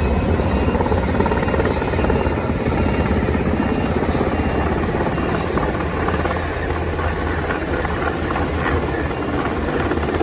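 MH-60S Sea Hawk helicopter rotors, a steady rapid chopping beat over a low rumble, continuous throughout.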